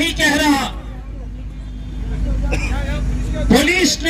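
A man's speech through a handheld microphone, broken by a pause of about two seconds, over a steady low rumble with faint background voices.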